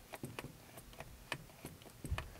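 Faint, irregular clicks, a few each second, from a hand grease gun being worked while its locking coupler is clamped onto a zerk fitting, pushing grease in.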